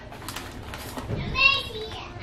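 A short high-pitched voice about one and a half seconds in, over the faint bubbling of a butter, Hennessy and Coca-Cola glaze simmering in a stainless saucepan.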